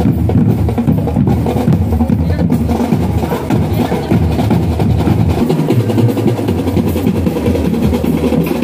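Marching band drum line playing without a break on bass drums and snare drums.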